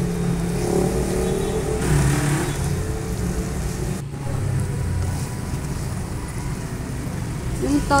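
Chopped pork sisig frying in a metal wok while a spatula stirs and scrapes it, over a steady low rumble.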